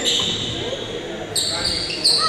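Rubber dodgeballs bouncing and short high-pitched squeaks of sneakers on the gym's hardwood floor, over players' voices echoing in a large hall.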